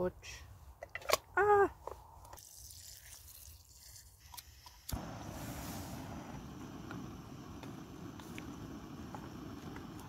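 Small gas canister camping stove burning: a steady burner noise that starts abruptly about five seconds in, with a sharp click at its onset.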